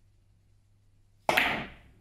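Carom billiards shot: one sharp click of the cue tip striking the ball about two-thirds of the way in, ringing out over about half a second, then a softer knock of the balls near the end.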